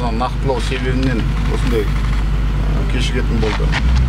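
Men talking in a conversation over a steady low rumble.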